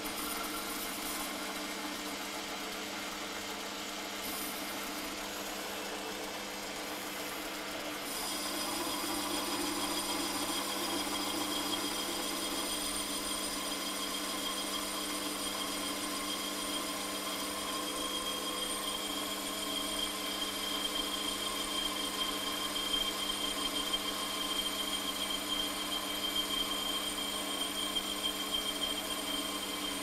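Holzmann ED 750 FDQ metal lathe running with a steady motor and gear hum while a carbide insert tool turns a stainless-steel tube dry, without cutting oil. About eight seconds in the cutting noise gets a little louder and a thin high-pitched tone sets in, growing stronger as the pass goes on.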